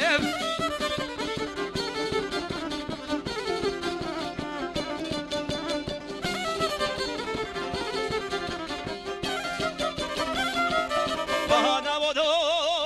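Instrumental break of Bosnian izvorna folk music: violin playing the melody over a strummed šargija, the long-necked Bosnian lute. A man's voice, with a wide wavering vibrato, comes back in singing near the end.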